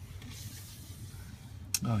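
Faint rubbing hiss from a handheld camera being moved, with one sharp click near the end, followed by a man's voice starting ('oh').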